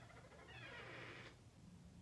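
Near silence: room tone, with a faint, brief sound lasting under a second about half a second in.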